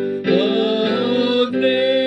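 Music: a hymn sung with instrumental accompaniment, long held notes with a slight waver, the melody moving to a new note just after the start and again about a second and a half in.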